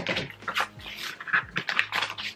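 Printed paper card rustling and tapping against a plastic cutting mat as it is handled, a run of short, irregular crisp rustles and taps.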